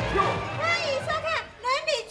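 A bustle of voices gives way, about half a second in, to music with a high voice singing a melody, the opening theme of the drama within the sketch.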